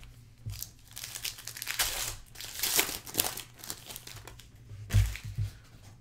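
Foil trading-card pack wrapper being torn open and crinkled by hand, in an irregular crackle, followed by a couple of soft knocks near the end.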